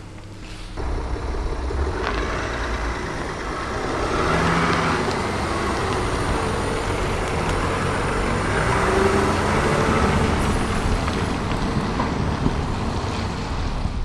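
A road vehicle running: a steady rumble with hiss that starts about a second in and grows a little louder from about four seconds.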